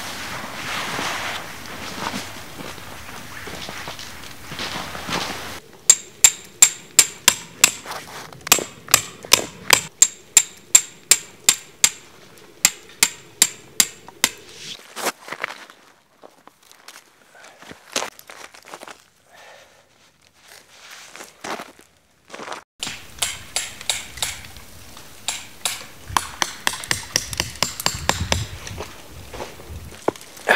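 Tent fabric rustling, then a metal tent peg being hammered in: a long run of sharp, ringing strikes at about two and a half a second. After a quieter pause with a few scattered knocks, another run of strikes follows near the end.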